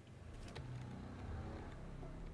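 A faint low steady hum, with a few soft clicks.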